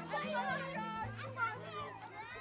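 Many children's voices chattering and calling out at once on a school playground, with background music of low held notes underneath.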